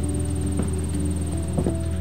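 A steady low hum carrying a few steady tones, with a couple of faint knocks about half a second in and near the end.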